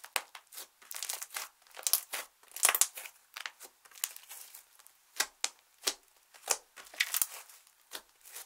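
Hands squishing, pressing and folding a soft clear slime mixed with black and red eyeshadow, giving irregular quick sticky clicks and crackles, loudest in a cluster about a third of the way in.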